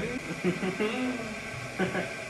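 Quiet, indistinct talking with a brief louder syllable near the end; no other sound stands out.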